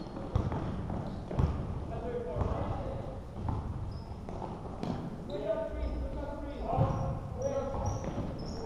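Basketball dribbled on a hardwood gym floor: dull thuds about a second apart in the first half, under indistinct voices of players and spectators, echoing in a large hall.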